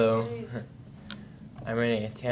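A man's voice through a handheld microphone making two short held vowel sounds, like hesitant 'um's, one at the start and one near the end, with a faint click between.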